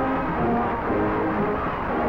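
High school marching band playing, brass and woodwinds holding sustained notes that shift in pitch, over a steady low rumble.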